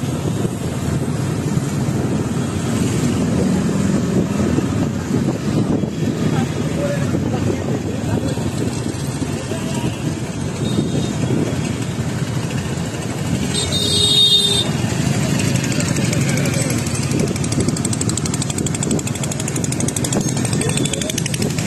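Motorcycle running steadily while riding along a road, with wind rumble on the microphone. A brief high-pitched tone cuts through about fourteen seconds in.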